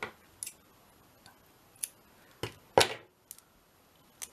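About six short, sharp clicks and rustles as small fabric scraps are handled on a wooden craft table, the loudest near three seconds in.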